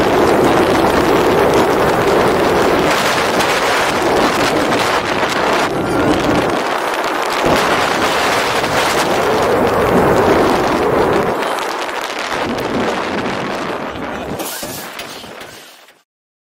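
Wind buffeting the camera's microphone over the rumble of a steel roller coaster train running along its track at speed, the noise thinning and fading out over the last few seconds.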